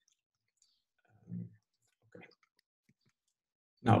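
Near silence broken by a short low hum of a man's voice about a second in and a few faint clicks, with a spoken word starting just at the end.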